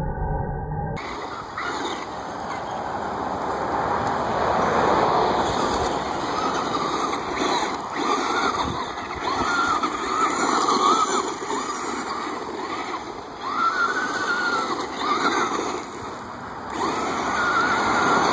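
Electric motor of a Traxxas Rustler RC truck whining and rising and falling in pitch again and again as the throttle is worked, with its tyres crunching and scattering on loose gravel and dirt.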